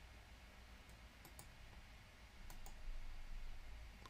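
Faint computer mouse clicks: two pairs of short sharp clicks about a second apart, over a low hum and room tone.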